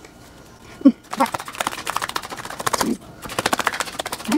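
A tarot deck being shuffled by hand: a fast run of light card clicks starts about a second in, pauses briefly near three seconds, then starts again.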